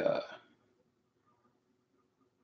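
A man's drawn-out hesitation "uh" trailing off in the first half second, then near silence with faint room hum.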